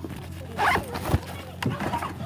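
Phone handling noise: short scraping, zipper-like rubs as the microphone brushes against a jacket, with a sharp click a little after one second.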